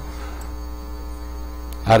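Steady electrical mains hum with a buzz of evenly spaced overtones, unchanging throughout.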